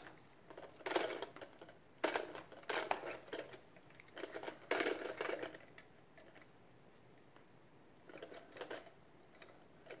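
Plastic clicking and scraping as a new toilet fill valve's telescoping shaft is twisted to set its height, in a few short bursts with quiet gaps between.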